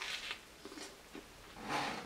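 A person biting into a toasted grilled sandwich and chewing, faint, with a short crisp noise at the start and another near the end.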